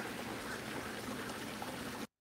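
Steady, faint rush of running water at a backyard pond, cut off abruptly at the end.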